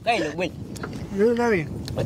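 Speech only: raised voices calling out twice, in the middle of a group's egging-on.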